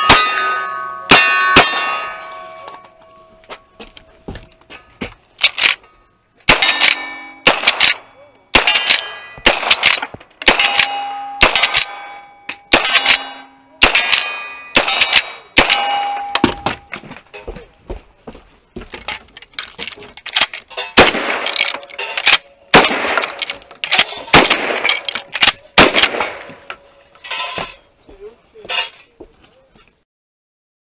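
A string of gunshots, first from a single-action revolver and then from a rifle, fired at steel plate targets. Each hit is followed by a ringing clang from the steel. There is a brief lull a few seconds in, then steady fire until near the end.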